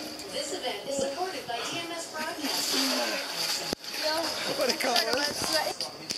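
Voices without clear words: a man's shouts and cries reacting to the cold of an ice-water soak, along with onlookers, cut off abruptly by an edit a little past halfway.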